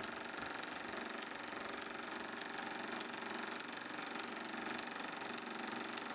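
Film projector running, a steady fast mechanical clatter with a whirr and hiss.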